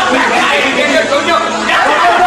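Several people talking at once, a steady chatter of voices.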